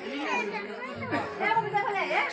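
Several voices talking over one another: crowd chatter with no other clear sound.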